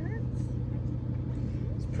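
Minivan's engine idling: a steady low hum, with faint voices briefly at the start and a word near the end.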